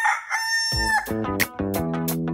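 A rooster crowing, its long drawn-out final note ending about a second in, as music with a steady beat starts up underneath.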